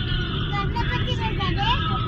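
Steady low rumble of a moving car heard from inside the cabin, with faint voices underneath.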